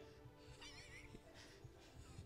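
Congregation laughing faintly, with high squealing laughs about half a second in and again near the end, over faint steady background music.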